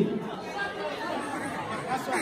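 A crowd of guests talking over one another in a large hall: a low, overlapping murmur of voices.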